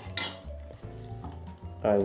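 Background music, with a short clack of hard plastic just after the start as the clear plastic gimbal protector clip is handled and set down.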